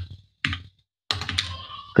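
Computer keyboard typing: two short runs of keystroke clicks with a pause between them.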